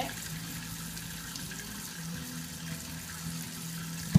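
Kitchen tap running steadily, its stream splashing into a stainless steel sink.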